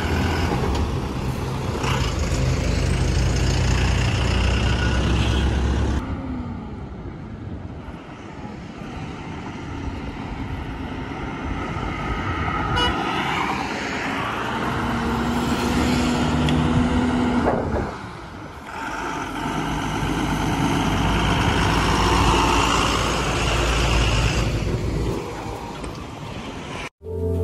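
Heavy goods trucks and other vehicles driving past on a highway, their diesel engines rumbling loudly as they go by. A horn sounds once, held for a moment, about two-thirds of the way in.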